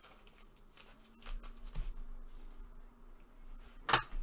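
Trading cards and a clear plastic sleeve being handled: a few soft rustles about a second in, then one sharp tap near the end.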